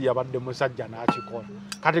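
A light clink about a second in, followed by a brief high ringing tone that fades within about half a second.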